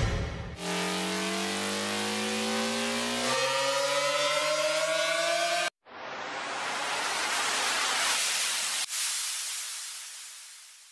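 Dubstep sound-effect samples played one after another: the tail of an impact hit at the start, then a synth riser whose stacked tones climb slowly for about five seconds. After a brief break comes a white-noise riser that swells upward, and then a white-noise downlifter fading away near the end.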